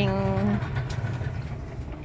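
A steady low engine hum runs throughout. A voice holds a sung note over it for the first half second.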